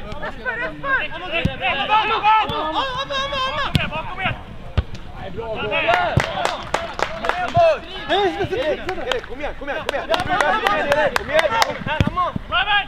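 Several male voices shouting and calling across a football pitch, overlapping, with a run of sharp clicks and knocks in the second half.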